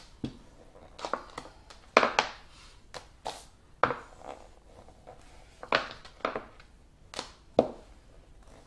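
Small rolling pin rolling out green sugar paste on a work board, with a string of irregular sharp knocks and clacks as the pin strikes and rocks on the board, one or two a second.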